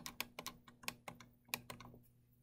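Faint, quick, irregular clicking of computer keys and mouse buttons, about a dozen clicks in under two seconds.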